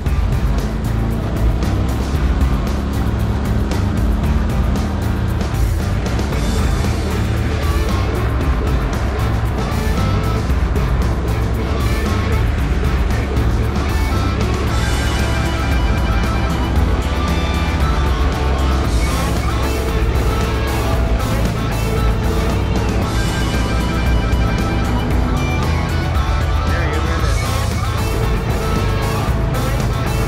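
Background music over a boat motor running steadily as the boat moves through the marsh.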